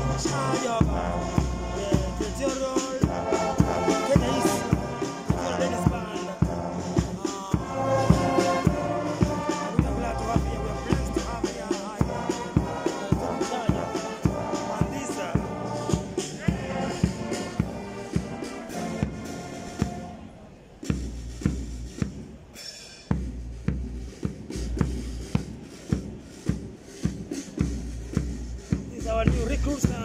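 Women's brass band playing a march: brass horns and sousaphones carry the tune over a steady bass and snare drum beat. About two-thirds of the way through the horns stop and the drums keep beating time alone.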